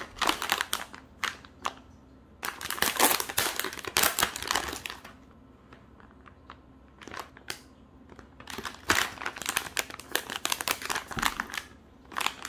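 Clear plastic zip-lock pouch crinkling as it is handled and opened, in several bursts of crackling with short quiet gaps between them.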